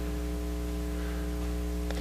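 Steady electrical mains hum, a low buzz with a stack of even overtones, over a light hiss in the recording, with a faint click near the end.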